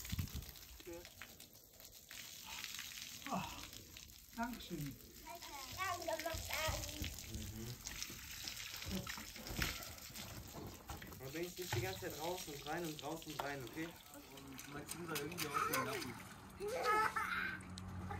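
Water running from a garden hose and splattering onto a concrete roof as a man rinses his arms and head under it. People's voices come and go over it.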